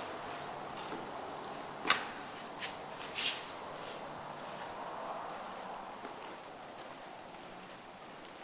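Steady hiss of room tone with three short knocks about two to three seconds in, the first the sharpest and loudest.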